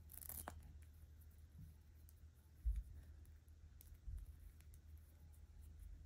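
A short rip of a small Velcro tab on a toy doll's diaper being pulled open, then quiet handling with a couple of soft bumps.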